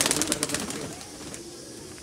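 A flock of domestic pigeons flapping their wings in a flurry of quick wing beats as they scatter from a grabbing hand, with cooing underneath. The flapping dies down about a second in.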